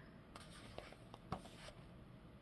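Faint paper rustling and a few soft ticks as a page of a paperback coloring book is turned by hand, the clearest tick a little over a second in.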